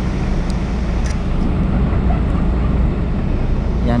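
Steady low vehicle rumble, with a couple of faint light clicks about half a second and a second in.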